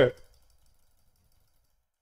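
The tail of a man's spoken phrase in the first moment, then near silence: no other sound.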